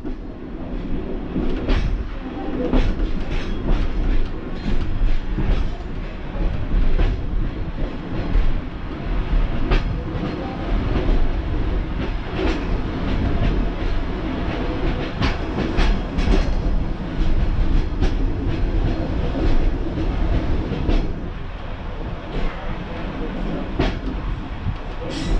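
Class 142 Pacer diesel railbus running along the line, heard from the driver's cab: a steady low rumble with frequent sharp clicks as its wheels cross rail joints.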